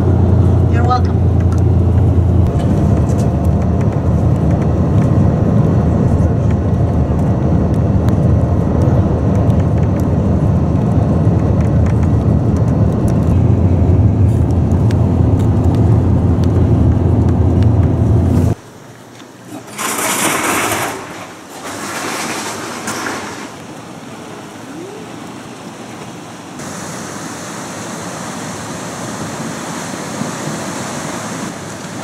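Steady low road-and-engine rumble heard from inside a moving vehicle, which stops suddenly about two-thirds of the way through. Then comes the rush of ocean surf on rocks, first in two loud surges, then as a steadier wash.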